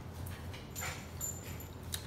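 A dog whimpering faintly in the background, with a short high whine a little over a second in.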